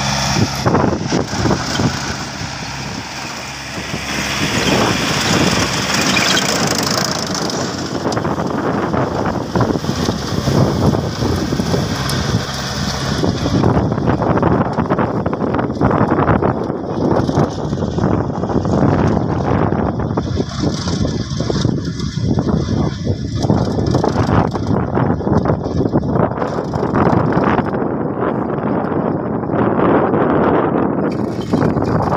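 Farm tractor's engine running steadily under load as it pulls a rear rotary tiller through dry soil.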